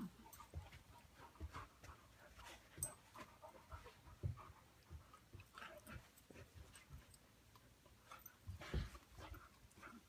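Two dogs play-fighting on a rug, heard faintly: panting and scuffling, with scattered soft thumps and clicks. The loudest is a thump near the end.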